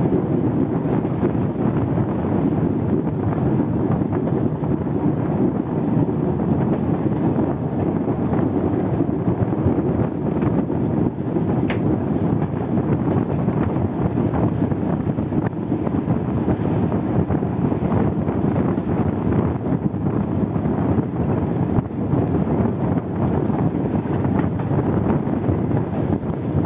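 Rail car T1 515 running along the track, its steady rumble heard from an open window under heavy wind rush on the microphone. A brief click about halfway through.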